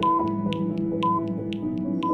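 Countdown background music: sustained notes over a steady clicking beat, about four clicks a second.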